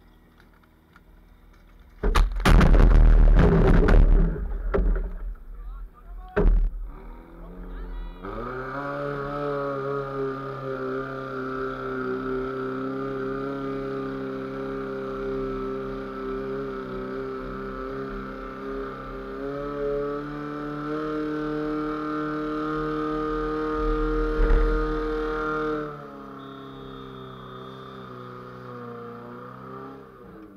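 Portable fire-sport pump engine climbing in pitch about eight seconds in and running at high, steady revs while it draws water from the tank through the suction hose, then dropping off abruptly a few seconds before the end. Earlier, about two seconds in, there are loud splashes at the tank as the suction strainer goes into the water, and water pours back into the tank as the strainer is lifted out near the end of the run.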